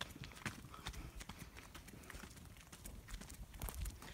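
Faint running footsteps: a quick series of short steps.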